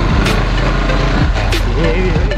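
Motorcycle engine running steadily at low speed, a low even hum under road and wind noise.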